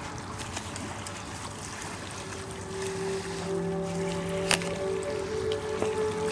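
Steady rush of wind and small waves on a stony lakeshore, with soft background music of long held notes coming in about two seconds in and growing a little louder; a sharp click about halfway through.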